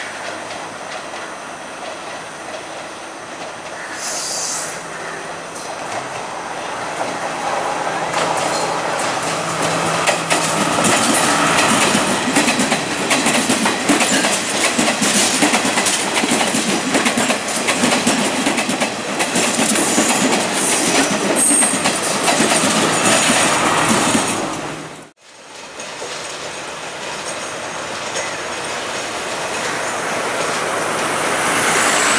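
Sri Lankan diesel multiple unit (power set) running past close by. Its wheels clatter over rail joints and points, and brief high squeals come from the wheels; the sound builds as the train nears and stays loud while the carriages go by. Near the end the sound cuts off suddenly, and another power set is heard approaching more quietly.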